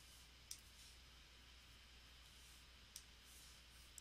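Near silence: a steady low hum of room tone, with two faint clicks, about half a second in and again near three seconds.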